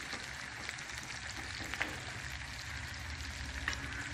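Oil sizzling steadily as battered vegetable pieces shallow-fry in a non-stick wok, with a few light clicks from a wooden spatula stirring them.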